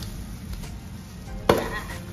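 Plastic lid pried off a canister of cream-filled wafer rolls: a single sharp pop about one and a half seconds in, with a brief ring after it.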